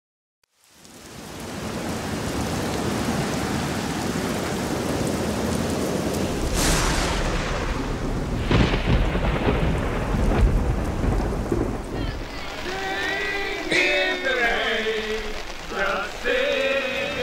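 Heavy rain falling steadily during a thunderstorm, with two sharp thunder cracks about two seconds apart near the middle, each trailing into a low rumble. In the last few seconds pitched sounds come in over the rain.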